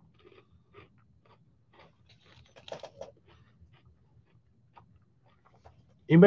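Faint crackles and clicks close to the microphone, gathering into a brief cluster about halfway through.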